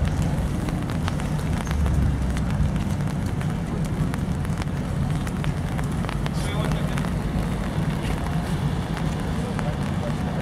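Rainy street ambience: a steady low rumble with many small scattered ticks, typical of rain pattering on an umbrella close to the microphone, and faint voices in the background.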